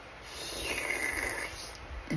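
A single raspy, snore-like hiss lasting about a second and a half, one of a string of deliberately made random noises.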